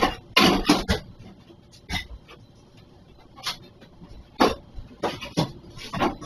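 Irregular metal knocks, clanks and scrapes: a serving-dish lid being jammed and levered against a cash register's lock to force it open, without success.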